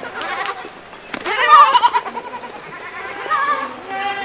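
Goats bleating: one loud, quavering bleat about a second and a half in, and a shorter, fainter one near the end.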